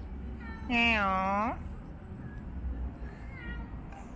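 A small child's drawn-out wordless vocal call, a whiny, meow-like sound about a second long that dips and then rises in pitch, about a second in, with a fainter short one near the end, over a low steady background rumble.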